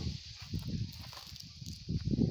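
Quiet outdoor background noise: a low rumble and a steady faint high hiss, with a few faint soft knocks from camera handling or steps.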